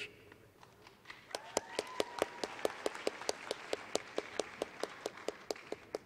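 Applause: steady, evenly spaced hand claps, about four or five a second, starting about a second in, with a steady held tone underneath for several seconds.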